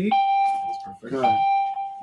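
Two long electronic beeps, each a steady single-pitched tone lasting under a second, with a brief voice between them.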